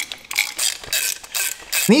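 Hand ratchet clicking in quick strokes, about four to five clicks a second, as bolts are run through an aluminum bracket into a power steering pump.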